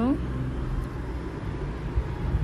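A low, uneven background rumble with a faint hiss above it, like distant traffic heard under a voice recording. A woman's spoken word trails off at the very start.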